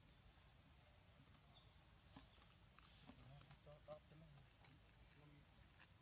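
Near silence: faint outdoor background with a few soft clicks and some brief, faint pitched sounds about three to four seconds in.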